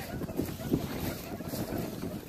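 Footsteps through dry grass with wind buffeting the microphone, an uneven rumble with soft thuds.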